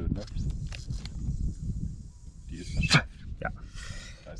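A man blowing hard through a small home-made nozzle to test whether it is clogged: one short, loud puff of breath about three seconds in, over a steady low rumble.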